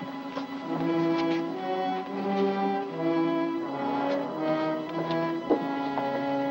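Orchestral film score with strings playing a line of held notes, one note after another. A short sharp knock sounds once about five and a half seconds in.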